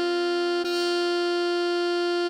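Alto saxophone melody holding written D5, a steady note that breaks off briefly about two-thirds of a second in and is sounded again at the same pitch.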